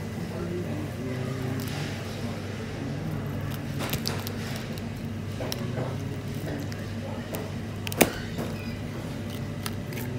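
Metal spoon prying and scraping at a sea urchin's shell around its mouth, with scattered small clicks and one sharp crack near the end as the shell gives. A steady low hum runs underneath.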